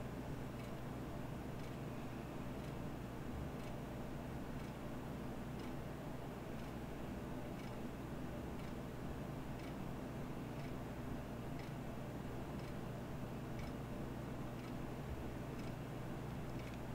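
Quiet hallway room tone: a steady low hum with faint, evenly spaced ticks.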